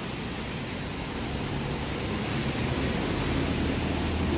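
Street traffic on a wet road: steady tyre hiss, with a truck's engine drone growing louder near the end as it passes close by.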